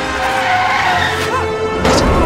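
Action-movie soundtrack: orchestral score over car skidding noise, with a sharp crash just before the end as a car is smashed.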